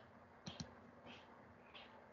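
Two quick computer mouse clicks about half a second in, against near silence.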